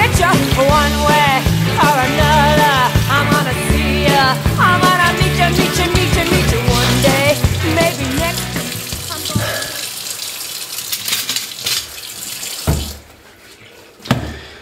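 A song with a singing voice and a heavy bass beat fades out about nine seconds in. A kitchen tap is left running into a sink, and the water cuts off suddenly near the end.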